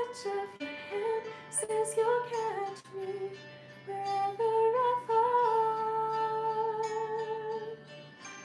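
A woman singing a slow, emotional song over a backing track, her held notes gliding between pitches and ending on one long sustained note from about five seconds in.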